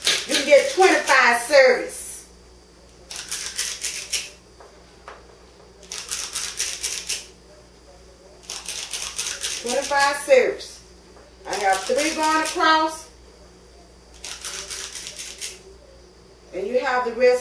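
A #40 cookie scoop scraping portions of cookie dough out of a bowl, in bursts of rapid clicking scrapes about a second long, repeated several times a few seconds apart.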